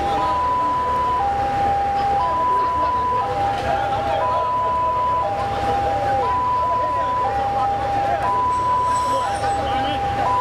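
Two-tone hi-lo police siren, switching between a higher and a lower note about once a second, over the voices of a crowd.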